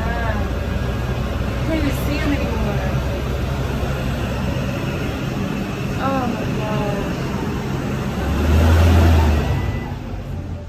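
A steady low rumble with distant voices talking faintly over it. The rumble swells to its loudest briefly about eight and a half seconds in, then eases.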